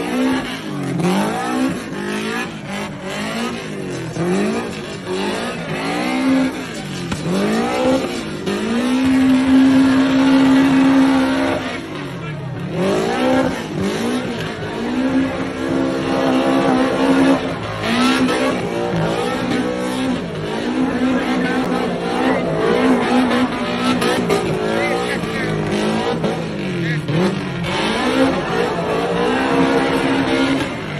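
Car engine revving hard in repeated rises and falls as the car drifts and spins on wet pavement. Twice it is held steady at high revs for a few seconds, about a third of the way in and again around halfway.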